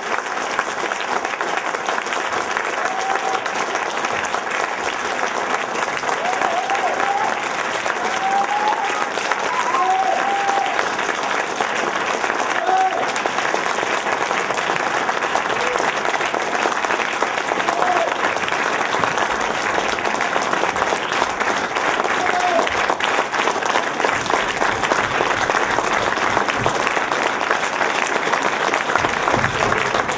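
Audience applauding steadily, with scattered shouts and whoops from the crowd, mostly in the first half.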